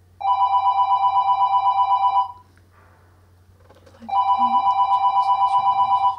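Office desk telephone ringing with a fast electronic warbling trill: two rings of about two seconds each, separated by a pause of about two seconds.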